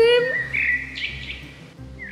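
Birds chirping: a thin, high whistled note held for about half a second, coming in just after a brief pitched call at the very start.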